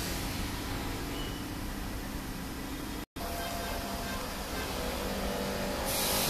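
Steady background hum and hiss with no distinct event, broken by a brief total dropout about three seconds in.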